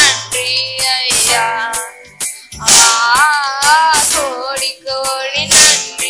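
A boy singing a worship song, his voice wavering in a vibrato, over a Yamaha PSR-S775 arranger keyboard playing chords with a steady programmed drum beat.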